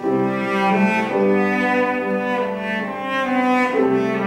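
Cello with piano accompaniment, playing an English folk-song study in sustained bowed notes that change every half second or so. A louder phrase begins sharply at the start.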